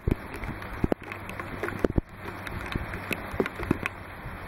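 Rain falling steadily, with many irregular sharp taps of drops striking close by.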